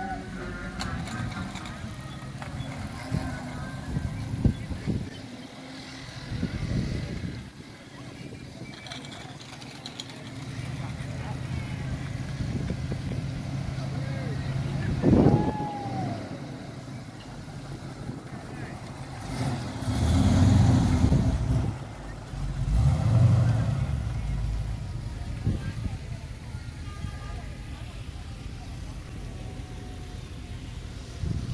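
Classic muscle car's engine running as it rolls slowly along, revved twice about three seconds apart.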